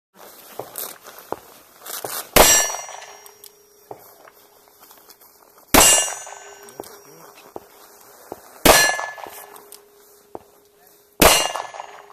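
Four .38 Special revolver shots about three seconds apart, each followed at once by the clang of a steel plate target being hit. The plates' ringing carries on between the shots.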